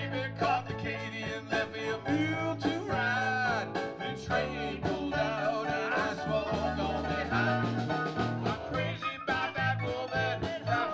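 Live blues band playing a passage with no lyrics sung: electric guitar, electric bass, drums and keyboards, with a lead line that bends and wavers in pitch over a steady bass.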